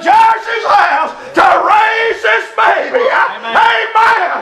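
A man preaching in a loud, chanted sing-song cadence, shouting out phrases that break every second or so.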